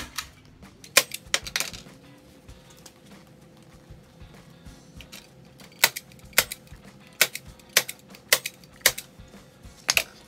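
Manual staple gun firing staples through carpet into a plywood board: a few sharp snaps in the first couple of seconds, then a steady run of about seven, roughly one every half second, in the second half.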